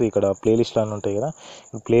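A man talking continuously, with a steady, high, finely pulsing chirp going on behind the voice.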